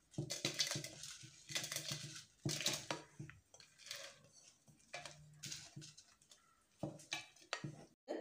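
A broad flat blade scraping a roasted grated-coconut, red-chilli and shallot mixture out of a frying pan into a steel mixer-grinder jar: irregular short scrapes and taps of the blade on the pan, with pauses between them.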